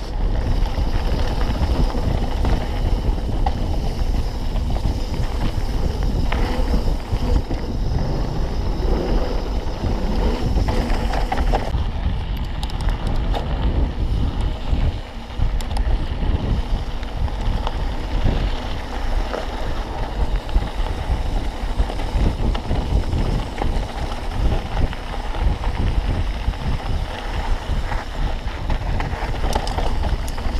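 Wind buffeting the microphone of a helmet-mounted action camera on a fast full-suspension mountain bike descent, mixed with the steady rattle and clatter of the bike over rough dirt trail. The noise eases briefly near the middle where the bike crosses a smoother road.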